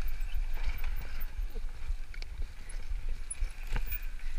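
Wind buffeting a GoPro's microphone with a steady low rumble, over mountain-bike tyres rolling on a dusty dirt trail at speed. The bike rattles and knocks irregularly over bumps, with a sharp knock near the end.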